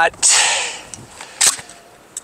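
A short hiss, then one sharp crack about one and a half seconds in.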